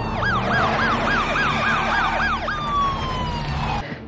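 Police car siren: a slow falling wail switches to a fast yelp of about three or four sweeps a second for about two seconds, then goes back to a falling wail that cuts off just before the end.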